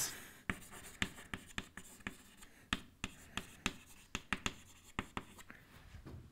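Chalk writing on a blackboard: irregular sharp taps of the chalk striking the board, with faint scratching between them.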